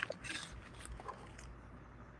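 A quiet pause between voices: faint low hum and hiss of room noise, with a few soft small clicks in the first second.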